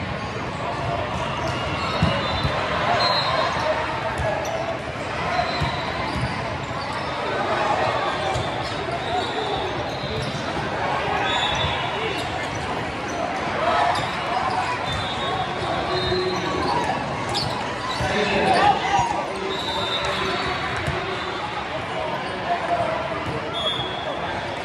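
Volleyballs being hit and bounced, sharp thuds here and there, under steady crowd chatter echoing in a large hall, with short high chirps scattered through.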